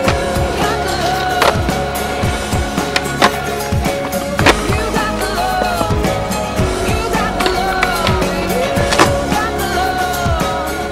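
Skateboard wheels rolling on concrete, with several sharp clacks of boards popping and landing, over a music track.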